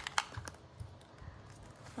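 A few light plastic clicks and taps of felt-tip pens being handled at a pen cup and set down on a notebook, the sharpest about a quarter second in, then fainter small ticks.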